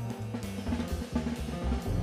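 Instrumental music with a drum kit beat of kick, snare and cymbals, over a bass line and keyboard played on a digital piano.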